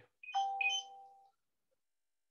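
A short electronic notification chime: a couple of bell-like tones that start about a third of a second in and die away within about a second.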